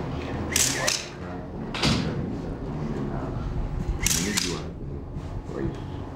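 Indistinct voices in a room, cut by three short bursts of sharp clicks: one about half a second in, one near two seconds, and one around four seconds.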